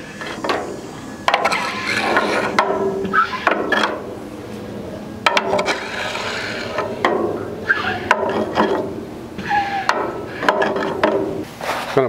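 Metal griddle scraper dragged in repeated strokes across a wet rolled-steel griddle top, pushing rinse water off; several strokes begin with a sharp click as the blade lands on the steel.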